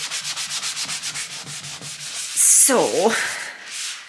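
Scourer sponge scrubbed quickly back and forth over a wet, soapy wooden furniture top, about six or seven strokes a second. The scrubbing stops about two seconds in.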